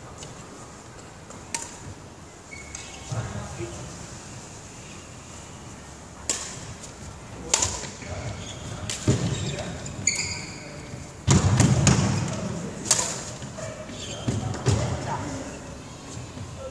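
Badminton play on a wooden court: a string of sharp, irregularly spaced racket hits on the shuttlecock, mixed with heavy footfalls and thuds on the wooden floor. The loudest is a low thud about eleven seconds in.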